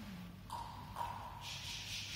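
Quiet concert-hall ambience in the hush before a choir's first entry: small taps and shuffles, a faint brief held tone, and a soft hiss building near the end.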